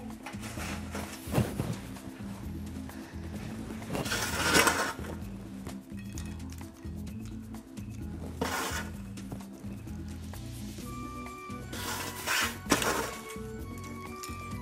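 Soft background music, over which toasted bread is crumbled by hand onto a bowl of clams in several short, dry bursts at about one, four, eight and twelve seconds in, with light clinks of clam shells.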